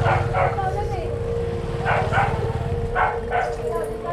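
A dog barking, three pairs of quick barks about a second apart, over a steady low rumble and a steady whining tone.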